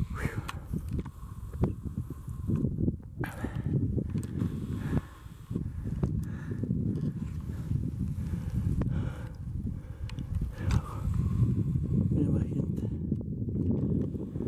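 Wind buffeting the microphone on an open snowy mountainside, heard as a steady, uneven low rumble.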